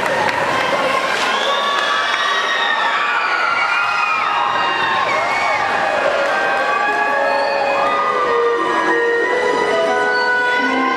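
Crowd of school students cheering, shouting and screaming. From about seven seconds in, music with long held notes starts up under the cheering.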